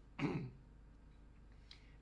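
A man clears his throat once, briefly, about a quarter second in, followed by faint room tone.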